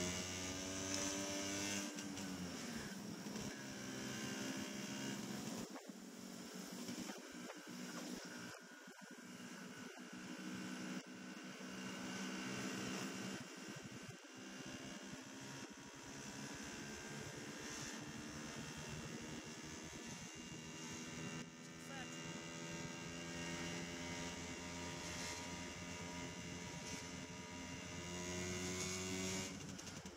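Motor scooter engine running on the move, its pitch falling over the first few seconds as it eases off, then holding fairly steady at cruising speed, with wind and road noise.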